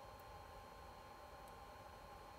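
Near silence with a faint, steady high-pitched whine from a bench power supply charging a battery.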